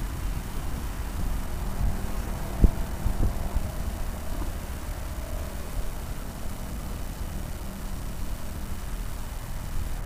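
Outdoor background noise of the ground: a steady low rumble and hiss, with two faint knocks about three seconds in.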